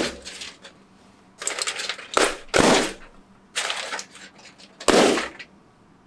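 Air-filled balloons, wrapped in crumpled aluminum foil, popping one after another as a pen point pierces them: several sharp bangs a couple of seconds apart, with crackling of the foil in between.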